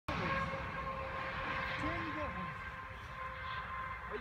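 Outdoor ambience: wind rumbling on the microphone under a steady high-pitched hum, with a faint voice about two seconds in.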